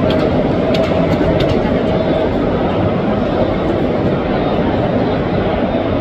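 Loud, steady noise of a football stadium crowd, many voices shouting and chanting together with no break.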